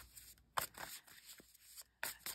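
Faint rustling and a few soft clicks of tarot cards being handled, the loudest about half a second in.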